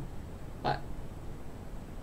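A man's voice saying one short word, "like", about two thirds of a second in, in an otherwise quiet pause with faint room tone.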